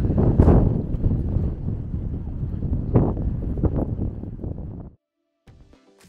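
Wind buffeting the microphone in uneven gusts, a low rumble that cuts off suddenly about five seconds in. Background music begins just after.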